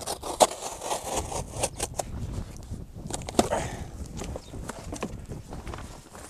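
Corrugated cardboard box being split apart and folded flat by hand: an irregular run of crackles, tears and scrapes, with two sharper cracks about half a second in and about three and a half seconds in.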